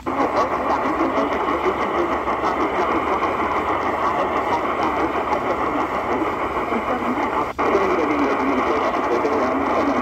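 Qodosen DX-286 portable radio's speaker playing a weak medium-wave AM station on 1520 kHz: a dense hiss of static and interference with a faint, indistinct voice under it. The sound cuts out for an instant about seven and a half seconds in as the tuning steps to 1530 kHz, and the noisy signal carries on.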